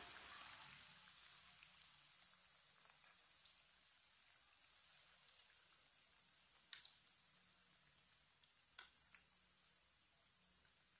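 Near silence: a faint sizzle of hot oil in a frying pan as fried patties drain in a wire skimmer above it, with a few soft clicks of the skimmer against the pan, about two, seven and nine seconds in.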